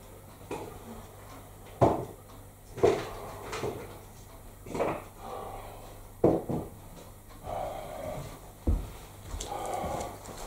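A handful of sharp, irregular knocks and clatters with some rustling: a cupboard or drawer and a container being handled while dog biscuits are fetched.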